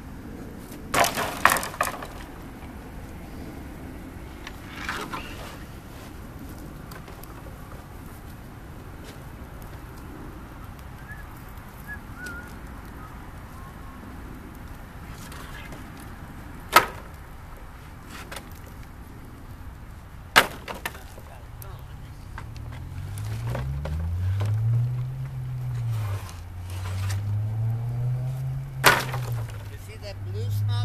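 Scrap-lumber bonfire: boards clatter onto the wood pile about a second in, then the burning wood pops sharply a few times. Over the last several seconds a louder low hum rises and falls in pitch.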